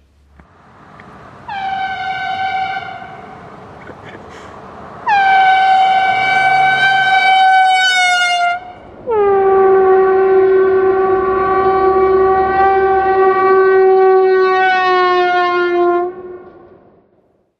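Handheld compressed-air horn sounded in three blasts from a passing pickup truck at about 40 mph: one short, then two long. The pitch drops as the truck passes the camera, the Doppler effect. The second blast sags near its end and the last, longest blast sits lower.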